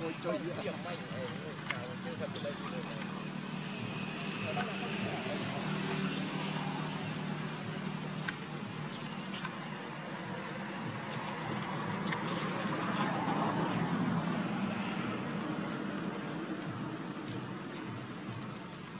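Indistinct voices over a steady low background hum, clearest in the first few seconds, with scattered light clicks.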